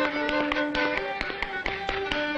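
A fiddle playing a lively folk dance tune, with the sharp taps of Welsh clog-dance steps on a wooden floor clattering in among the notes.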